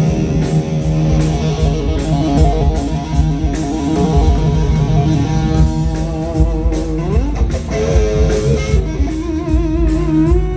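Live rock band jamming: an electric guitar plays a lead of sustained notes with wide vibrato over bass guitar, with a note bent or slid upward about seven seconds in.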